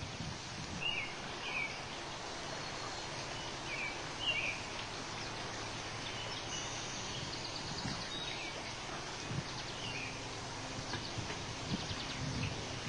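Outdoor ambience: a steady hiss of background noise with short, high bird chirps scattered through, several in the first few seconds.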